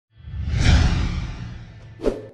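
A whoosh sound effect from an outro animation: it swells up about a quarter second in, peaks quickly and fades away over a second or so, with a low rumble underneath.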